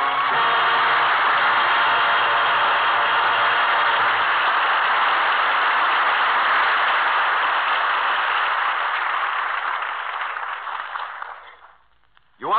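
Studio audience applauding at an act break, with the last of the music faintly under it at first, fading out over the last two seconds.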